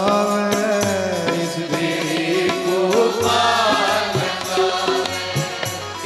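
Sikh devotional chanting (simran): a man's voice sings a mantra-like chant in long, gliding held notes over steady musical accompaniment.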